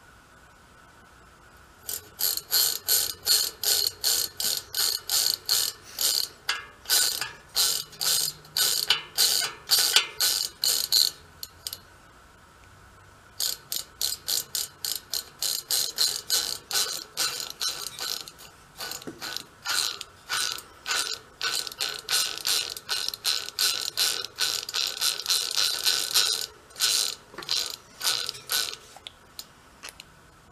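Rapid ratcheting clicks from the freewheel pawls in a VeloSolex 3800's rear wheel hub as the hub is turned back and forth by hand. The clicks come in short bursts about twice a second, in two long runs with a pause of a couple of seconds in the middle.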